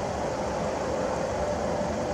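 Steady low background rumble with a faint steady hum, unchanging throughout.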